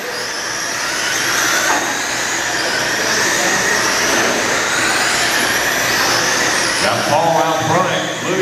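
Several radio-controlled oval race trucks running laps together, their motors whining, with the pitch rising and falling as they accelerate and slow through the turns.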